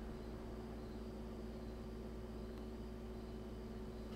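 Quiet room tone: a steady low hum with a faint second steady tone above it, unchanging, with no distinct events.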